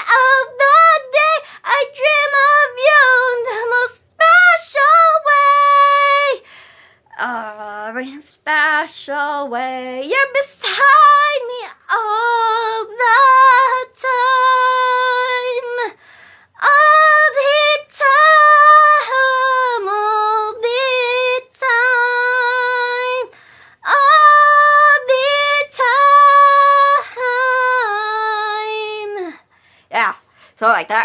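A woman singing a slow love song alone, with no accompaniment, in phrases of long held notes broken by short pauses; about seven to ten seconds in, one phrase drops lower.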